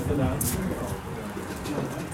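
Background voices of people talking, not clearly worded, with one sharp click about half a second in.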